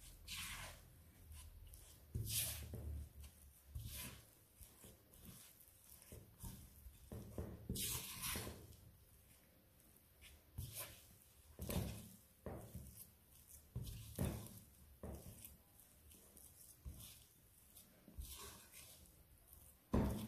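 A spatula working a very wet, sticky high-hydration dough in a glass bowl, heard as faint, irregular squelches and scrapes with a few louder strokes scattered through.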